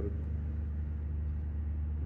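A steady low hum, even in level throughout, with a short spoken word at the very start.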